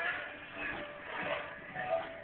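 Portable radio playing: a mix of held musical notes and voice-like sound from its speaker.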